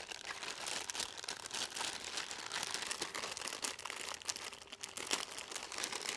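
Crinkling and rustling of a small black packaging bag and the folded softbox diffuser inside it as they are handled and opened, a continuous run of small crackles.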